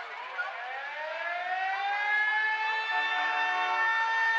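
Siren on a vintage police car winding up: a wail that starts low, rises over about a second and a half, then holds steady at a high pitch.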